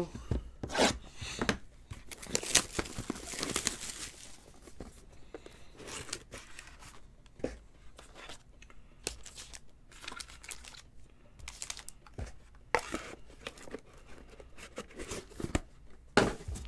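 A foil trading-card pack wrapper being torn open and crinkled, with the rustle and clicks of box and card handling: irregular, loudest a few seconds in and again near the end.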